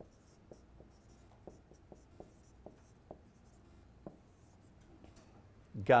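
Dry-erase marker writing on a whiteboard: faint, scattered short strokes and taps as an equation is written out.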